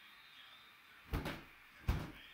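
Two short knocks, one a little past a second in and one near the end.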